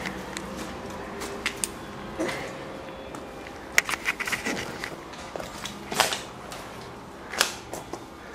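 Footsteps and irregular clicks and knocks on a rubble-strewn floor, with camera handling, over a faint steady hum.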